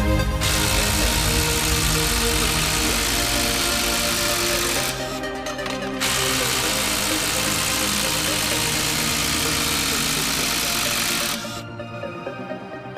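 Hilti 12V cordless impact driver hammering as it drives fasteners into a wooden stump. It runs in two long stretches with a short break about five seconds in, then stops a little before the end. Electronic music plays underneath.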